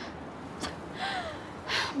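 A woman's sharp, breathy gasp near the end, in distress just before she speaks, over quiet background hiss.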